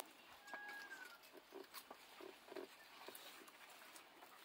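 Near silence outdoors. About half a second in there is a faint short whistle that slides slightly down, then a few soft, low animal-like grunts and scattered light clicks.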